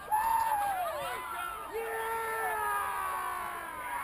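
A group of people yelling from across a pond: long drawn-out hollers that slide down in pitch, with several voices overlapping.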